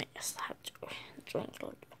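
A woman whispering a few quiet, breathy words.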